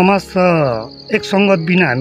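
A man speaking at close range, with a steady high insect trill running underneath.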